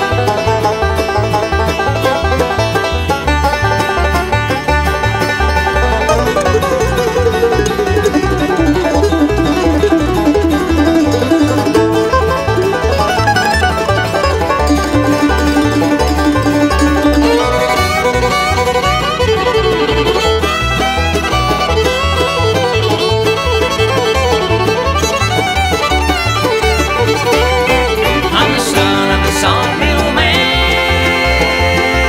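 Bluegrass band instrumental break between verses: banjo and fiddle playing over a steady beat with guitar and upright bass.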